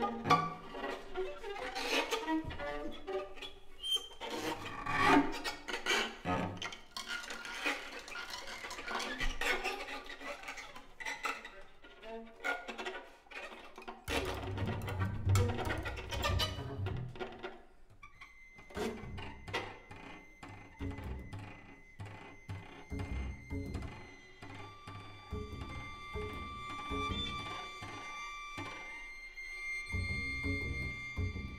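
Improvised music from a string quartet of violin, viola, cello and double bass: many short, broken bow strokes in the first half, then low bowed double bass and cello from about halfway, with thin, steady high tones held above them in the last third.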